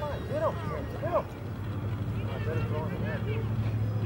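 Faint, distant shouts of players and spectators across an outdoor soccer field, clearest in the first second or so, over a steady low rumble.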